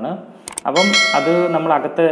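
A mouse-click sound followed by a bright bell ding that rings for about a second, the sound effect of a subscribe-button animation, with a man's voice underneath.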